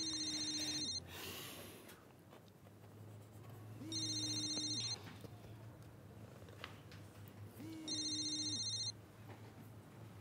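A phone ringing with an electronic ring, three rings each about a second long and about four seconds apart: an incoming call.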